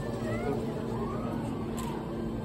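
Indistinct chatter of people nearby over a steady low mechanical hum, with no clear single event.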